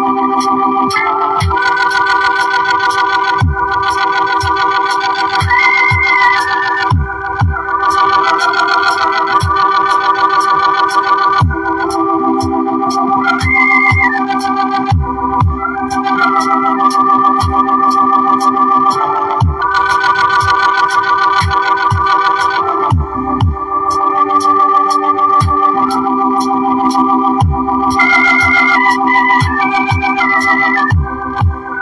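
Electronic keyboard playing held, organ-like chords that change every few seconds, with a higher melody line on top and low drum thuds and ticks of a beat underneath.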